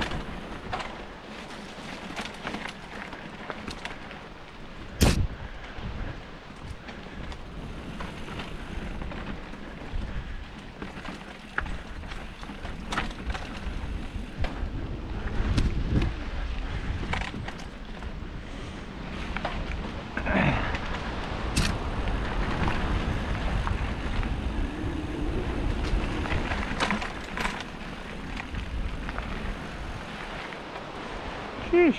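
Mountain bike ridden fast down a dirt singletrack: tyres rolling over dirt, rocks and roots with the chain and frame rattling and clattering over the bumps. A sharp, loud clack about five seconds in and another about two-thirds of the way through.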